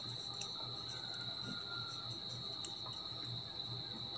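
Faint scratching of a marker writing on paper, under a steady high-pitched whine.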